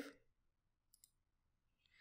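Near silence: room tone, with one faint computer mouse click about a second in.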